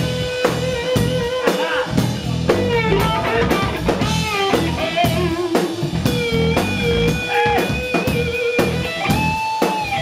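Live rock band playing an instrumental passage: an electric guitar lead with long held notes, string bends and vibrato over bass and a steady drum-kit beat.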